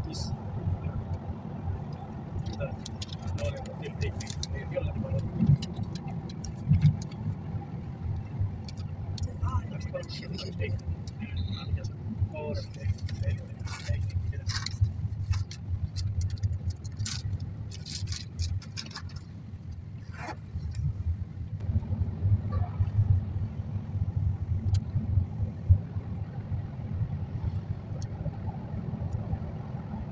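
Road noise inside a moving vehicle: a steady low rumble of engine and tyres, with scattered small clicks and rattles. The rumble eases briefly about two-thirds of the way in, then returns louder.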